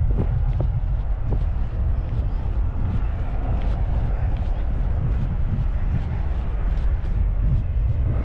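Wind buffeting a GoPro Hero 10's built-in microphone while walking outdoors: a loud, uneven low rumble.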